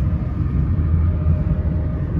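Steady low road and engine rumble heard from inside a car cabin at highway speed, with a faint steady tone joining a little past the middle.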